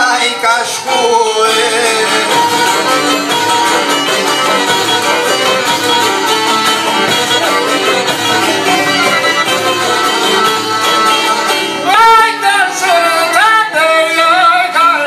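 Live Albanian folk music: long-necked plucked lutes and a violin playing an instrumental passage, with a man's voice singing in the first moments and another male voice taking up the song about two seconds before the end.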